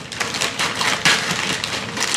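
Scissors snipping through a plastic mailer bag, the plastic crinkling and crackling as it is cut, with the loudest cut about a second in.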